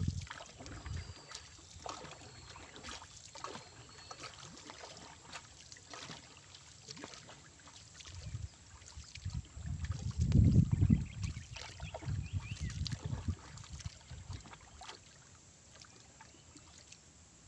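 A wooden paddle dipping and stroking through the water of a small wooden canoe, with short splashes and knocks. A low rumble swells to its loudest about ten seconds in and fades by about thirteen seconds.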